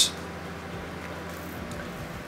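Steady faint hiss of background noise with no distinct sound events.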